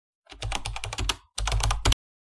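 Keyboard typing sound effect: a quick run of key clicks, about ten a second, with a short break partway, cutting off suddenly near the end.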